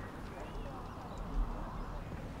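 Quiet outdoor ambience: low wind rumble on the microphone, swelling in a gust about one and a half seconds in, with faint distant voices.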